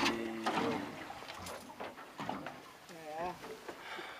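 Mostly people's voices at low level: a held voiced note at the start and a short burst of speech about three seconds in, with a few faint knocks between.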